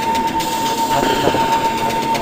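Droning soundtrack: a dense, noisy rumbling texture with one steady high tone held throughout.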